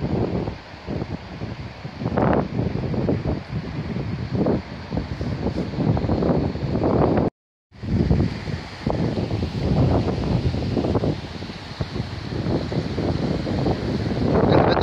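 Wind buffeting the microphone in irregular gusts over the steady rush of the River Ogmore in flood. The sound cuts out for a moment about halfway through.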